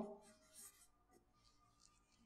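Faint scratching of a felt-tip marker drawing a line on flipchart paper, in several short strokes.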